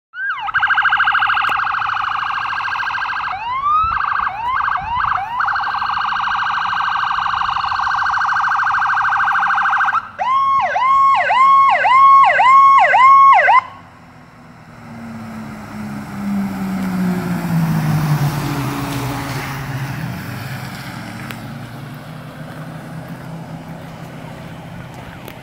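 A fire apparatus's electronic siren runs loud, switching between a very rapid tone and quick sweeping yelps, and cuts off about 13 seconds in. After that the vehicle's engine runs low and its pitch drops as it goes by.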